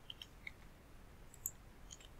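A handful of faint computer mouse and keyboard clicks, scattered and irregular, as text is selected, copied and pasted.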